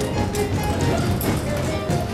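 Music from a live theatre pit band, sustained notes over a steady low bass line.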